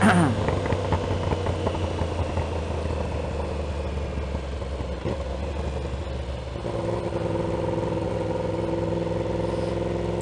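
Yamaha R1's crossplane inline-four engine with a one-off custom exhaust running at low revs while the bike slows in traffic, a steady low engine drone under road and wind noise. About two-thirds of the way in, a second steady engine note joins.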